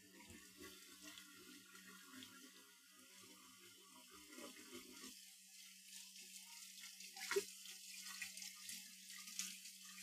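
Kitchen sink tap running faintly while things are washed at the basin, with one sharp knock about seven seconds in.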